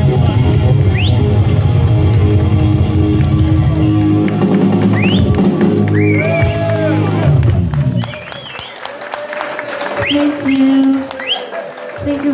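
Live rock band of electric guitar, bass guitar and drum kit playing loudly, with the song ending about eight seconds in. After it ends the sound is quieter, with a few voices and a few short rising whistles.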